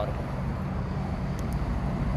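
Steady low rumble of road traffic, with the hum of a vehicle engine running.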